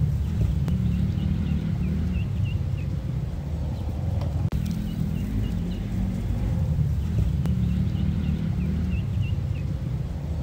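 Outdoor ambience: a steady low rumble with faint bird chirps coming in short runs.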